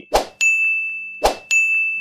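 Two bright ding sound effects, each a short sharp hit followed by a long ringing tone: the first just after the start, the second about a second and a quarter later. These are pop-up chimes for on-screen button animations.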